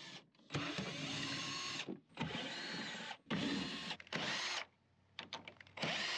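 Cordless drill-driver with a 10 mm socket bit running in short spurts as it backs out the RamBox's 10 mm screws. There are three runs of about a second each, and a fourth starts near the end.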